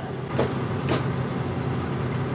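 Combine engine running steadily at a low idle, with two short knocks about half a second apart in the first second.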